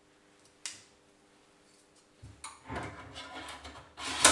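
Clicks and light rattling of a computer case's parts being handled. There is a single click about half a second in, then from about two seconds in a busier run of knocks and rattles as the hard-drive mounting rail and the drive bays of the mini-ITX case are worked by hand.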